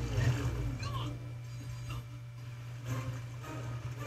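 Anime episode soundtrack playing quietly: a character's voice delivering a line in the first second, then fainter soundtrack sounds, over a steady low hum.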